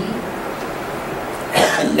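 A person coughing once near the end, over steady background noise.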